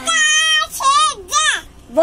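A young girl calling out a devotional 'jai' chant in a high, sing-song voice: one long held note, then two shorter calls that swoop down in pitch.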